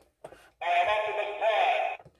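Tinny electronic sound effect from the built-in sound box of a Transformers Generation 2 Optimus Prime toy trailer, set off by pressing its button. It starts about half a second in and runs for over a second with wavering synthesized tones.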